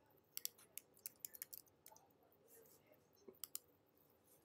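Faint clicks of a computer keyboard and mouse: a quick run of clicks in the first second and a half, then a few more near the end.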